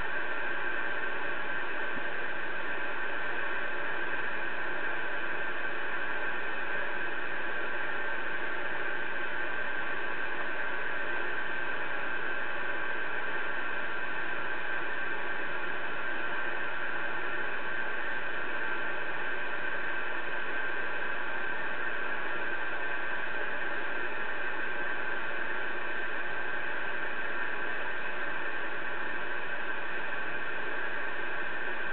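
Connex CX-3400HP radio receiver putting out steady, unbroken static hiss through its speaker, with no station coming through on the channel.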